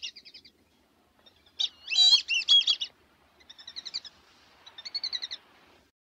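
A songbird singing in short, quickly warbling chirpy phrases, about four of them, the loudest about two seconds in. It stops abruptly just before the end.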